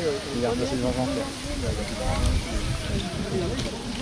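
People's voices talking throughout, over a low rumble of wind on the microphone.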